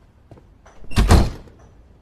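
Hotel room door pulled shut, closing with one loud thud about a second in, after a few light clicks.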